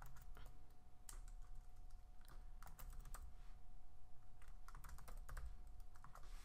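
Typing on a computer keyboard: irregular key clicks in short runs as a line of code is entered.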